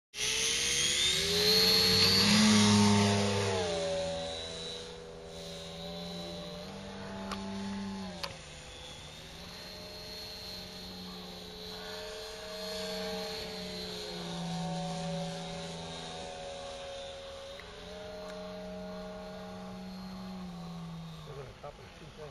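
Radio-controlled model Pitts biplane's engine running hard for takeoff, loudest two or three seconds in, then softer, its pitch rising and falling as the plane flies and manoeuvres.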